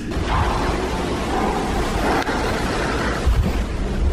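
Steady rushing noise with a deep rumble on a handheld phone's microphone, like wind or handling noise in a large empty concrete space, with a faint tap about two seconds in.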